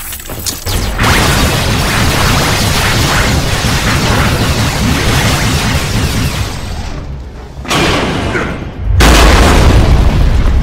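Cartoon battle sound effects: continuous energy-blast and crashing noise from about a second in, then a short dip and a heavy, deep boom near the end, with background score underneath.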